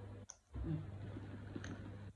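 A few faint clicks from handling a leather tote bag as it is turned around, over a steady low hum. The sound drops out briefly about a quarter of a second in.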